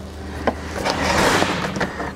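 Scraping and rustling of the rubber door-opening seal being pulled aside along the plastic pillar trim, with a sharp click about half a second in.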